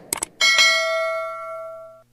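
Subscribe-button animation sound effect: a quick double mouse click, then a bell ding that rings on and slowly fades until it is cut off abruptly.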